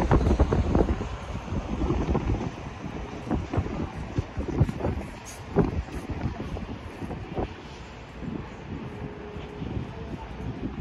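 Wind buffeting the microphone in gusts, loudest in the first couple of seconds and easing toward the end.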